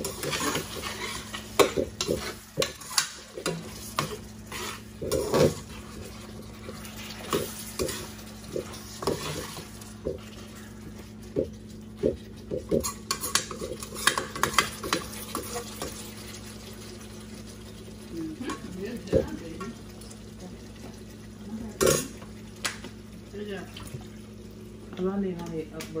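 A metal spoon stirring and scraping in a pan of simmering conch stew, with many short clicks and knocks of spoon on pan over a faint sizzle and a steady low hum.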